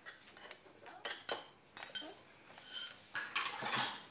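A small child handling things: scattered light clicks and knocks, then a louder rustle near the end.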